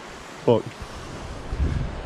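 A single spoken word over a steady outdoor hiss, with wind rumbling on the microphone in the second half.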